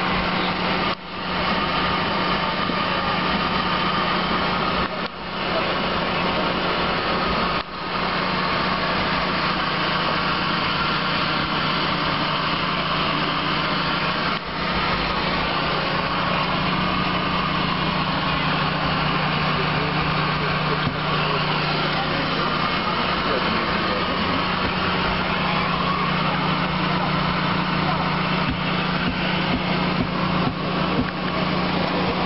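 Steady aircraft machinery drone heard from inside a parked Fokker 50 turboprop airliner's cockpit, with a constant low hum and a higher steady tone. The level drops briefly a few times in the first quarter.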